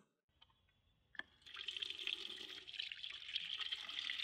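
A single click, then about a second and a half in water starts running from a plastic water jug's tap into a stainless steel sink basin as a steady splashing stream.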